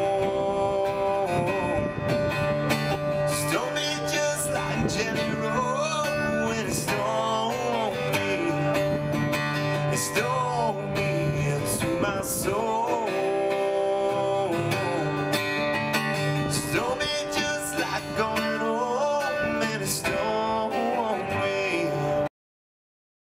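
Live acoustic guitar strummed in a steady rhythm, with a man's voice singing drawn-out lines over it every few seconds.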